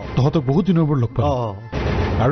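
A man's voice speaking, then a short burst of noise near the end.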